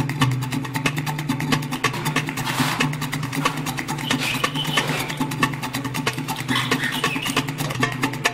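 Background music with a fast, steady beat.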